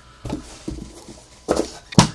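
Hands handling trading cards and card boxes on a tabletop: a few short knocks and rustles, with a sharp knock at the very end.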